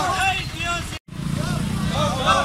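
People's voices over the steady hum of a running vehicle engine, with an abrupt break in the sound about a second in.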